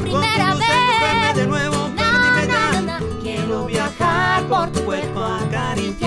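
Live acoustic music: a woman singing long, wavering melodic lines in Spanish with a man singing along, over a strummed acoustic guitar.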